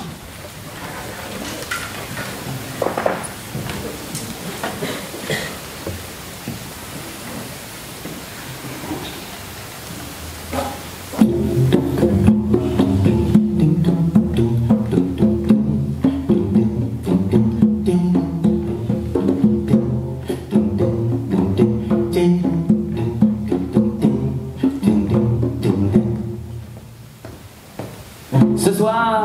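Chamber string orchestra playing an instrumental introduction: a soft opening, then about eleven seconds in the full ensemble comes in loudly with a repeated rhythmic figure in the low strings, dropping back shortly before the end.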